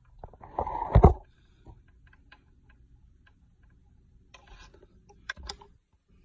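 Metal clanking and scraping about a second in, then a few light metal clicks: a dropped box-end wrench being fished out from among the engine parts with a magnetic pickup tool.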